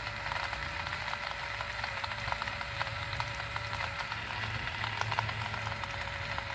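Portable battery-powered personal blender running steadily, its small motor giving a constant hum and whine, with ice and strawberries clicking and rattling in the cup as they are blended.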